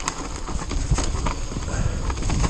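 Orbea Rallon 29er enduro mountain bike descending a rough dirt trail: the tyres rumble over the ground, and the chain and frame rattle and knock over roots and bumps.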